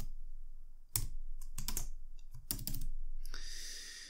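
Keystrokes on a computer keyboard, typed in short irregular runs.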